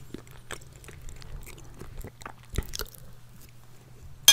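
Close-miked mouth sounds of chewing a bite of soft biscuit cake: scattered small wet clicks and smacks, with one stronger knock about two and a half seconds in.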